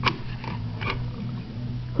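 Harrington Signal T-bar fire alarm pull station handle clicking as it is pressed against its glass break rod, which resists and does not break. There is a sharp click at the start and softer clicks about half a second and a second in, over a steady low hum.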